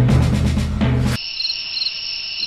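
A low, sustained music chord cuts off abruptly about a second in. It gives way to crickets chirping steadily in a high trill, with chirps pulsing a few times a second: a night ambience.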